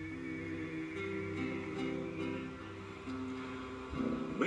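Acoustic guitar played alone, chords ringing and changing every second or so in an instrumental passage between sung lines, heard through a television's speaker.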